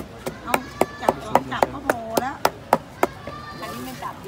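Wooden pestle pounding papaya-salad (som tam) ingredients in a mortar, about four strokes a second, stopping about three seconds in.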